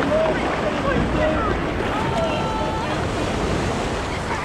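Breaking surf and wind buffeting the microphone, a steady rushing wash, with brief distant children's voices calling out over it.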